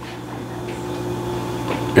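A steady low machine hum with several fixed tones, growing slightly louder, with a faint knock near the end.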